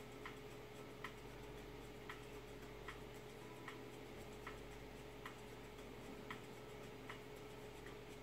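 Faint, regular ticking, a little faster than once a second, over a steady low hum.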